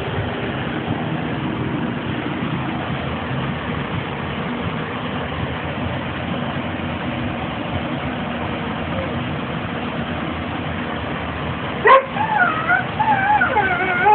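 A steady background hiss for most of the stretch. Near the end there is a sharp click, then a small dog's short whining, yipping calls that waver up and down in pitch.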